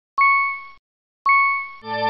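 Two identical electronic ding sound effects about a second apart, each struck sharply and fading out, then near the end a fuller, lower chime with many overtones. These are the end-card subscribe-button click and notification-bell sounds.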